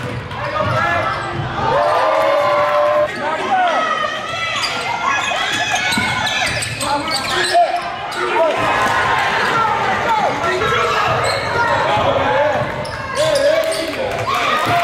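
A basketball bouncing on a hardwood gym floor during live play, with players' and spectators' voices.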